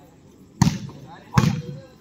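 A volleyball struck twice by players' hands, two sharp slaps a little under a second apart, as the ball is played back and forth over the net.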